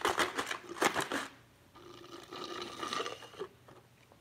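Drink being sucked up through a plastic straw from a cup: a quick run of crackly slurping noises for about the first second, then it goes much quieter.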